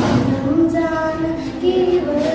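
A girl singing solo, holding long notes and gliding between pitches.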